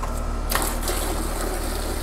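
Air-conditioning unit running with a steady, evenly pulsing low hum, joined from about half a second in by a broad rushing hiss.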